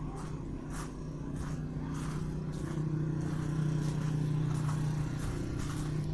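A motor vehicle's engine running with a steady low hum, growing louder about two to three seconds in.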